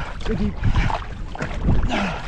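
Two-person outrigger canoe under hard paddling: wooden paddle blades dig and splash in the water while water rushes along the hull and wind buffets the microphone. Short shouts from the paddlers come about half a second in and again near the end.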